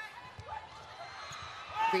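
Volleyball rally in an indoor arena: faint ball contacts and players' shouts over a low crowd murmur. A commentator's voice comes in near the end.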